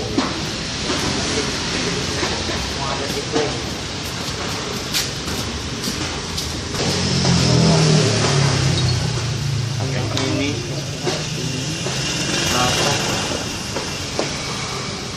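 Indistinct voices over background noise, with a motor vehicle engine running and getting louder for a few seconds in the middle.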